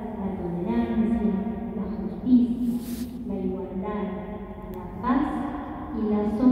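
A woman's voice reading a text aloud into a microphone.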